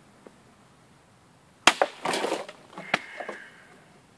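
A sword cutting through a water-filled plastic bottle: two sharp cracks about a second and a half in, then water splashing and pieces of the bottle falling, with another sharp knock about a second later and a brief ringing.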